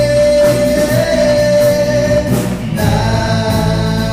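Live contemporary worship band with a male singer holding one long sung note over guitar, keyboard, bass and drums; the note ends about two and a half seconds in and a new sung phrase follows.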